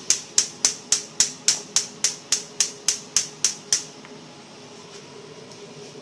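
Gas stove spark igniter clicking rapidly and evenly, about four sharp clicks a second for nearly four seconds, then stopping.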